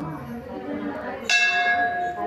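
A temple bell struck once, a little over a second in, ringing on with a clear steady tone. Low voices of people murmur underneath.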